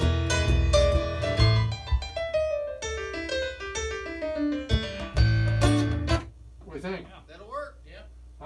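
Studio playback of a recorded song with piano, with a descending melody line through the middle; the section holds a fresh punch-in edit that is still faintly audible. The music cuts off about six seconds in, followed by a faint voice.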